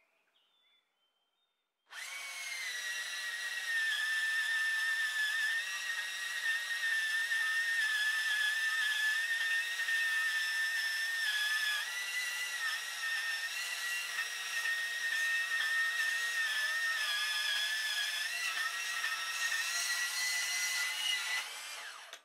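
Handheld angle grinder starts about two seconds in and runs at a steady high whine, its pitch wavering slightly as it works, then stops at the end.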